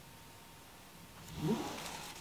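Quiet room tone, then about a second and a half in a woman's short closed-mouth hum, rising in pitch.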